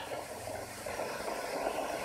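Marker pen scratching across a whiteboard while handwriting a line of text, a dry rasping hiss.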